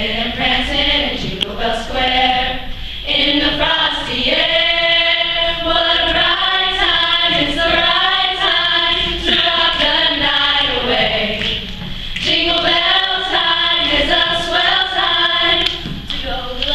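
A small vocal group of young male and female voices singing together in harmony, with long held notes.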